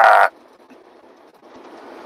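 A man's laugh trailing off at the very start, then faint, steady road and cab noise inside a moving semi-truck, growing a little louder near the end.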